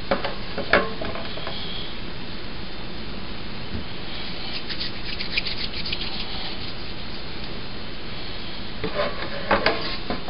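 Hands pressing soft flour putty onto the rim of a metal pot lid, over a steady hiss. There are light knocks of the lid near the start and again near the end, and a patch of small crackling ticks midway.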